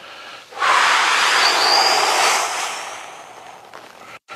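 A man's long, loud exhale, a breathy rush beginning about half a second in and fading away over the next three seconds. It is breathed out into the effort of a strap-assisted leg stretch.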